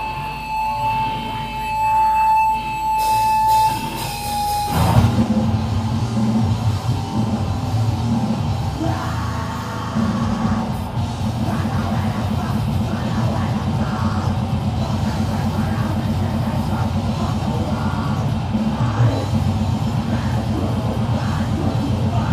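Live grindcore band: a single high tone is held for about the first five seconds, then the full band comes in at once with distorted guitars, bass and fast, even drumming under shouted vocals.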